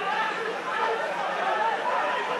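Several voices of players and onlookers at a football pitch, calling out and chattering over one another, with no clear words.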